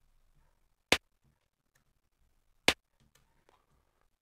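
Two short, sharp rimshot hits from LMMS's cr8000 drum-machine rim sample, sounded as notes are placed in the piano roll, about a second in and again near three seconds.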